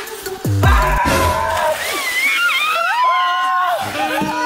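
A large bin of cold water dumped onto a sunbathing woman: a splash and slosh of water about a second in, followed by high, sliding shrieks. Electronic music with a deep falling bass drop plays under the start.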